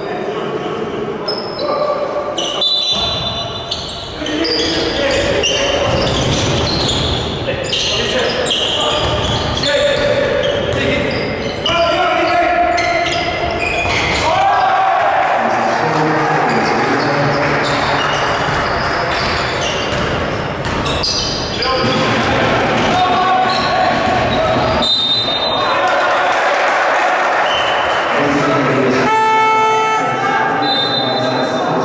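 A basketball bouncing on a hardwood gym floor during play, with sneakers squeaking and players' voices, echoing in a large hall.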